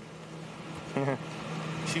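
Steady low street hum in a lull between voices, with one short laugh-like voice sound about a second in.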